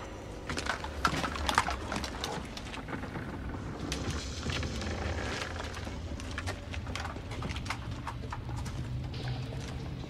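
Footsteps with irregular clicks and scrapes of boots and gear, densest in the first few seconds, over a low steady rumble that swells near the end.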